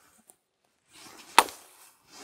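An axe biting once into the thin top of a felled tree trunk, a single sharp chop about one and a half seconds in, with a brief rustle just before it: cutting the tree's top off like a large branch.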